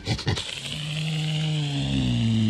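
A deer buck giving a low, buzzy, drawn-out call that falls slightly in pitch and grows louder, after a few short clicks at the start.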